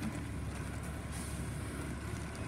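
Mack LEU rear-loader garbage truck's engine idling with a steady low rumble.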